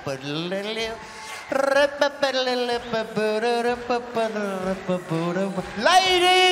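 A voice singing a few long, wavering held notes with little or no accompaniment, getting louder about a second and a half in.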